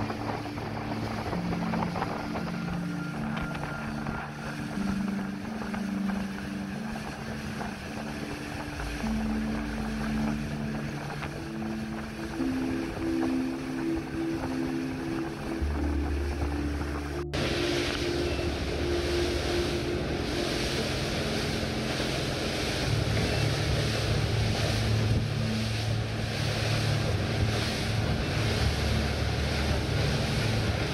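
Background music for about the first half, then a sudden cut to a motor fishing boat running at speed: water rushing along the hull and wake, wind buffeting the microphone, and a steady low engine drone.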